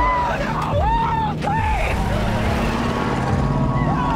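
Old pickup truck's engine running as it pulls away, with a woman's repeated anguished cries over it, rising and falling in pitch, heard from the TV episode's soundtrack.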